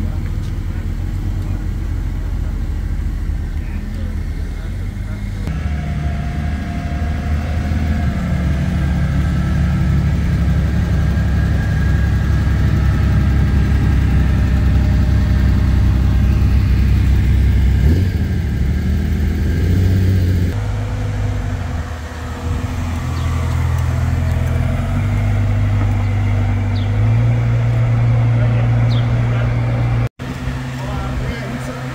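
Sports car engines running at low revs in a run of short clips, cut about five and twenty seconds in: first a Mercedes-Benz SLS AMG's V8, then a Ferrari 365 GTB/4 Daytona's V12, then another engine whose pitch steps up near the end.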